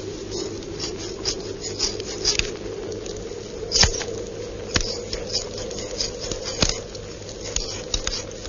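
Scissors snipping through hair in a string of irregular crisp snips, over a steady hum from the old film soundtrack.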